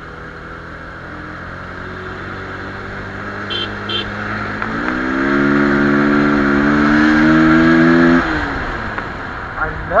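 Motorcycle engine running under way from the rider's seat. About five seconds in its pitch steps up and the sound grows louder as the rider accelerates. It holds high for about three seconds, then drops back as the throttle closes. Two short high beeps come just before the pitch steps up.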